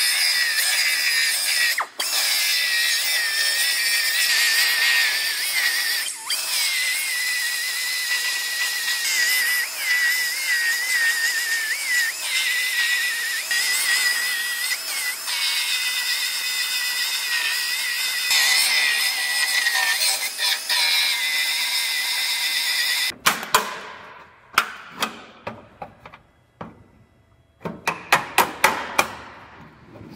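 Narrow belt file grinding through the seam of an aluminum pickup roof panel: a steady high whine that wavers in pitch as the belt is pressed on, stopping suddenly about 23 seconds in. It is followed by a run of sharp knocks and taps at the roof seam.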